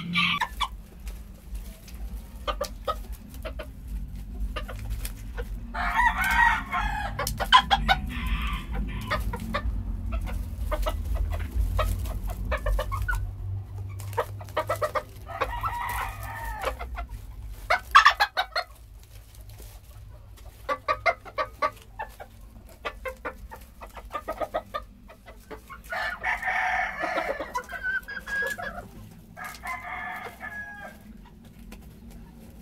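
Bantam roosters crowing: three long crows about ten seconds apart, with clucking and short clicks in between.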